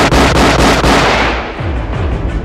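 Edited intro sound effect: a loud crackling blast, like fireworks, that fades out after about a second and a half over music.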